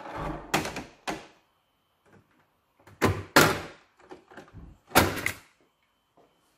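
Plastic scanner unit and cartridge access cover of an HP Laser multifunction printer being lifted open: a series of clunks and clicks, with the loudest about three and five seconds in.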